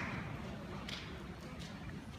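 Audience applause fading out, leaving a few scattered claps over a low murmur from the crowd.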